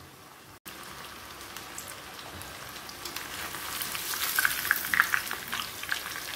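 Chicken 65 pieces deep-frying in hot oil in a cast-iron kadai: a steady, crackling sizzle that grows louder in the second half, after a brief cut-out less than a second in.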